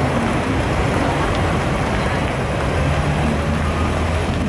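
Diesel engine of a wooden abra water taxi idling at the dock, a steady low hum that grows a little stronger near the end, over constant background noise.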